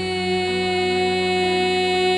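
A woman's solo singing voice holding one long, steady note over a soft instrumental accompaniment.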